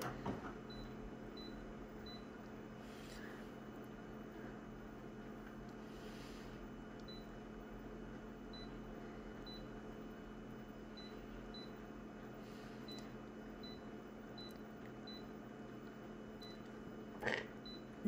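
Short high beeps from a photocopier's touchscreen as its on-screen buttons are pressed, about fourteen at irregular intervals, over the machine's steady low hum. A brief louder sound comes near the end.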